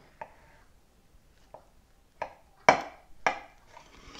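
Large chef's knife cutting down through a layered cake with whole baked apple pies inside, the blade breaking through the crust in a few short, sharp crunches, the loudest a little before three seconds in.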